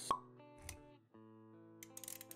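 Intro jingle of sustained musical tones with a sharp pop sound effect just at the start, the loudest event, and a short low thud about two-thirds of a second in; the music drops out briefly around one second and then comes back.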